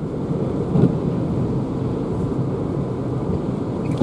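Steady tyre and wind rumble inside the cabin of a Renault ZOE electric car cruising at about 80 km/h, with no engine note.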